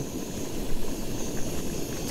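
Pressurised liquid-fuel camping stove burning under a pot, giving a steady rushing hiss with a low rumble beneath it.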